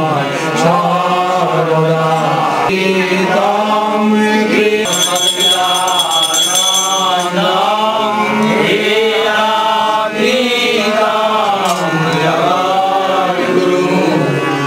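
Devotional chanting, a sung voice carrying a melodic line over a steady low drone. A high, steady tone sounds for about two seconds midway.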